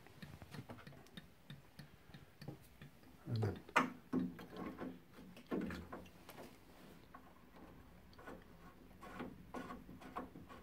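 Light, irregular clicks and taps of small metal and plastic parts being handled, a few louder ones midway: a new diverter valve cartridge being fitted by hand into the brass valve body of a Baxi Duo-tec combi boiler.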